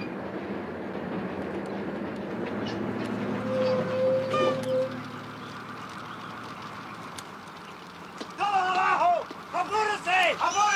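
Low rumble of a bus, with a brief steady tone about four seconds in. Near the end a man shouts loudly several times.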